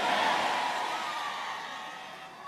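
Congregation noise in a large hall fading steadily, with a faint wavering voice in the background.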